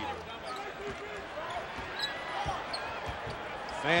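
A basketball being dribbled on a hardwood court, a few low thumps over the hush of a quiet arena crowd.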